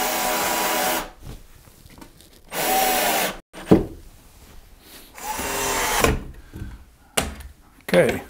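Cordless drill-driver driving a screw through a wooden block into pine benchwork framing, running in three bursts of about a second each, the last one slowing as the screw seats. A few sharp knocks follow near the end.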